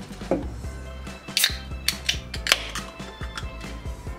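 A can of Haitai Bonbon grape juice with grape pieces being shaken and opened: a few sharp clicks and knocks of the aluminium can, the sharpest about one and a half seconds in, over steady background music.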